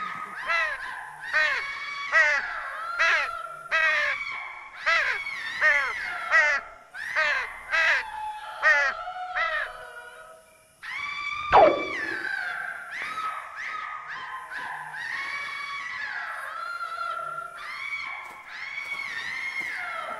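Sound-effects track of short bird calls repeated about every second or less for the first ten seconds, then a sharp falling swoop about halfway through, followed by a steadier run of pitched calls.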